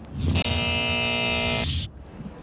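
A short TV-show transition sting: a held, steady electronic chord about a second and a half long that ends in a brief hiss and cuts off abruptly.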